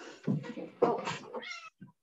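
A pet cat meowing briefly near the end, its pitch bending.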